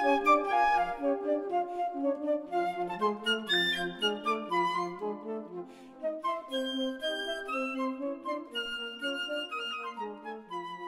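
Outro music: a flute playing a melody over lower accompanying notes, slowly getting quieter.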